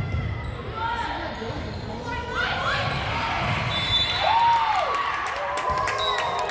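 Sneakers squeaking on a hardwood gym floor as volleyball players move during a rally, several short squeaks that glide up and down. Players' voices call out over them in the echoing gym.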